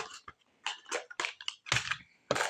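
Camera-cleaning supplies being handled and rummaged by hand: a quick, irregular string of small clicks and rustles, the loudest just before the end.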